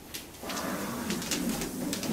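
A person's low, drawn-out voiced exhale, a hum-like sound lasting about two seconds, starting about half a second in, with scratchy noise over it.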